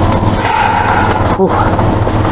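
Seed packets and plastic rustling as gloved hands grab them out of a cardboard display box. Under it runs a steady low machine hum, and a short 'ooh' comes near the end.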